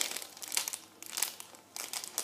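An ice lolly's wrapper crinkling in several short bursts as it is pulled and torn open by hand.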